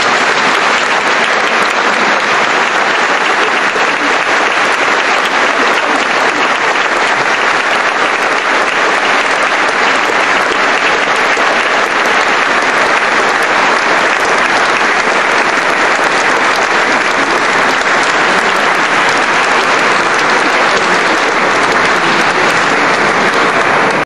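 Audience applauding: a loud, sustained wash of clapping.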